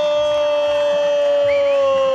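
A football commentator's drawn-out goal cry, one long "Gol!" held on a single steady pitch.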